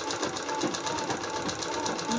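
Usha sewing machine stitching a seam, running steadily with a fast, even rhythm of needle strokes.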